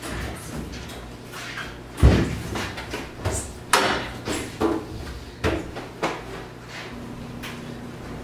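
Laundromat washing machine lids and doors being opened and shut, with laundry handling. There is a heavy thump about two seconds in, then a string of sharper knocks and clicks, all over a steady low hum.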